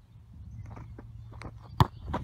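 Faint outdoor rumble on the microphone with a few soft rustles, then one sharp, loud thud close to the microphone near the end.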